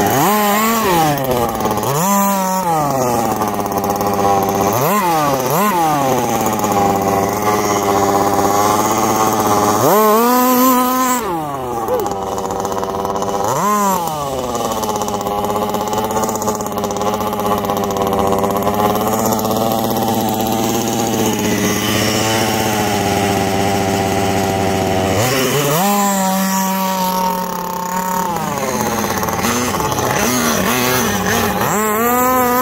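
1/5-scale gas RC buggy's small two-stroke engine revving up and down over and over as the throttle is worked, with sharp climbs in pitch between stretches of steadier running.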